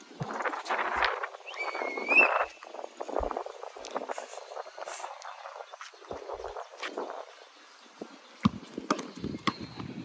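A basketball bouncing on a brick court with scattered sharp thumps, a quick run of bounces coming near the end as the player sprints with the ball. A short rising chirp sounds about two seconds in.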